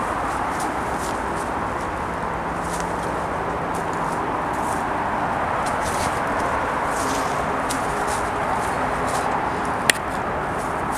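Steady outdoor roar of distant traffic, with faint crunching footsteps on dry leaf litter and debris and one sharp click near the end.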